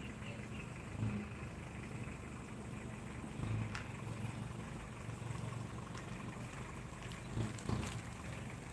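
Faint, low steady outdoor rumble that swells and fades a little, with a couple of brief light clicks, one about midway and one near the end.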